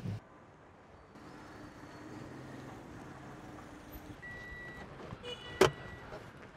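A car running low and steady, the hum stopping about four seconds in. Then comes a high steady electronic beep and a sharp click near the end as the car door is opened.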